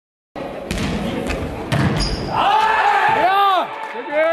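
A Faustball is struck and bounces on a sports-hall floor: several sharp hits in the first two seconds, echoing in the large hall. Then come loud, rising-and-falling shouts from players or spectators.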